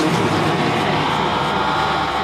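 Techno track in a breakdown: a steady, dense synth drone with no clear drum hits.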